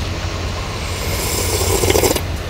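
Sea surf washing on a beach: a steady low rumble, with a wave's wash building from about a second in.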